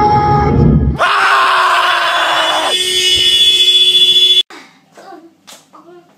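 A loud, harsh, distorted scream-like blast, about three and a half seconds long, that starts suddenly and cuts off abruptly, the shock sound of a jump-scare clip. After it, only faint room sound with a few soft knocks.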